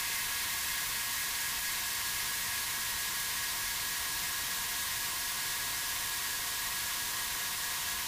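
Steady white-noise hiss, like static, with a few faint steady high tones under it.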